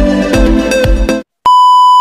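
Electronic dance music with a steady kick-drum beat cuts off abruptly about a second in. After a brief silence, a loud, steady, high test-tone beep sounds, part of a TV-glitch transition effect.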